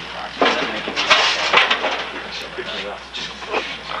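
Several sharp hits and thuds from a rough scuffle between two wrestlers, one of whom is being struck with a hand-held object, with shouting voices around them.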